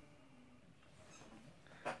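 Near silence: room tone, with a faint click at the start.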